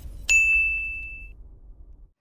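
A single bright ding from a logo-intro sound effect. It strikes about a third of a second in, rings on one high tone and fades away over about a second.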